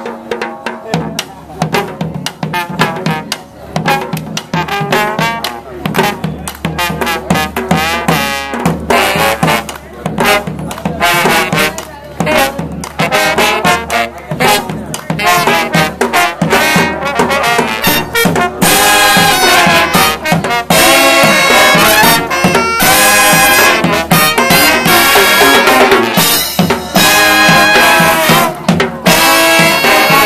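Brass band playing live, with sousaphone, trumpets and trombones: the tune opens with short rhythmic phrases, then about two-thirds of the way through the full band comes in louder and fuller.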